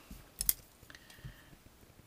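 Two light clicks close together about half a second in, from small modelling tools being handled on the hard work board; otherwise quiet room tone.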